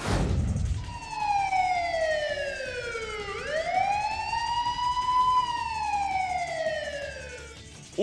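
A sudden low hit at the start, then a police siren wailing in one slow cycle: falling in pitch, rising again and falling slowly away.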